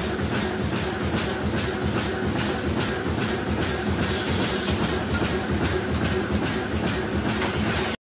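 A GH-400X2 double-channel garbage bag making machine running, with a regular clatter about three times a second over a steady hum.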